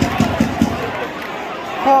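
Football crowd in a stadium stand: nearby spectators chattering over the steady murmur of the crowd.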